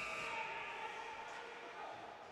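The ice rink's end-of-game horn dying away in the arena's echo during the first moments, leaving faint, steady rink room noise with a weak hum that slowly fades.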